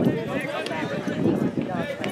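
Indistinct voices talking and calling out, with no clear words.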